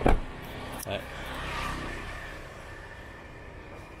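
A side door of a Chevrolet Trailblazer SUV shut with one loud thump, followed by a softer rustling noise that swells and fades over the next couple of seconds.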